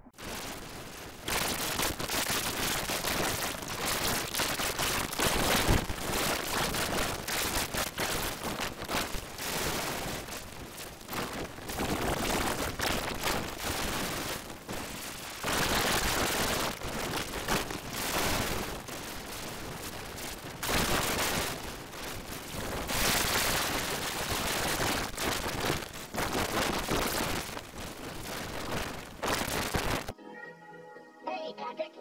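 Harsh, crackling digital noise from heavily effect-distorted audio, filling every pitch and swelling and dipping every second or two.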